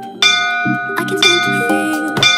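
Bell-like chime struck about once a second over background music, each strike sudden and ringing on: countdown timer chimes marking the last seconds of an exercise set.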